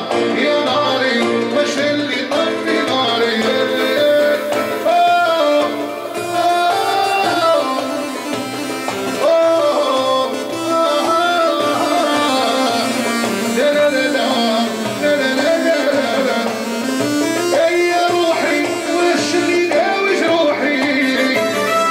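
Live amplified Algerian staifi (Sétif-style) wedding music: a male singer on a microphone over a synthesizer keyboard playing a winding, ornamented melody, with darbuka rhythm underneath.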